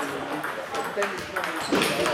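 Table tennis balls ticking sharply and irregularly off bats and tables as several tables play at once, with a murmur of voices underneath.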